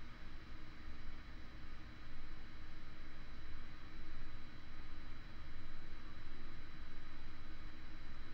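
Low steady background hiss with a faint steady high-pitched hum; no distinct handling or gluing sounds stand out.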